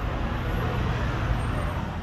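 Steady street traffic noise with a low motor-vehicle engine rumble.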